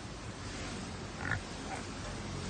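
A small pig gives one short call about a second in, followed by a fainter one just after.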